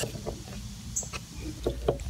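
Faint scattered clicks and handling noises of a car sun visor's mounting bracket being fitted and screwed to the headliner with its Phillips-head screws.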